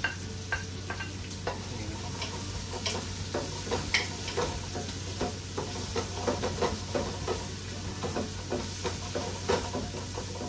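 Onions and garlic sautéing in hot oil in a pot, sizzling while a wooden spoon stirs and knocks against the pot. The knocks come more often in the second half, over a steady low hum.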